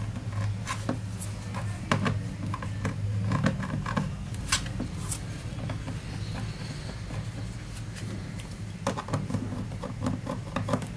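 Irregular small clicks and scrapes of a screwdriver turning out the screws of a laptop's bottom case, with the odd light knock of hands on the case, over a steady low hum.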